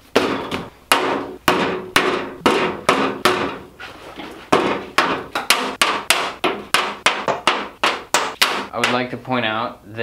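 Paint tubes and small bottles set down one after another on a metal tabletop: a quick run of sharp clacks, about two or three a second, each with a short ring. A voice starts near the end.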